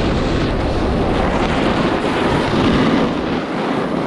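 Steady, loud wind rush on the microphone of a camera moving fast down a ski slope, mixed with snowboard edges scraping as they carve through groomed snow.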